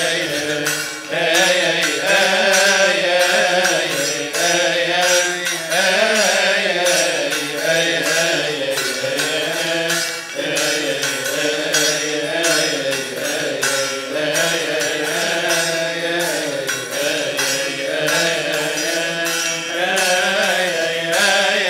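Male deacons chanting a Coptic hymn together in long, slowly bending melodic lines, kept in time by a steady metallic beat of hand cymbals.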